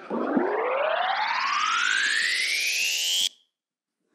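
Rising whoosh sound effect played over the sound system. One pitched tone with overtones sweeps steadily upward for about three seconds, then cuts off suddenly. It marks a fast-forward in time between scenes.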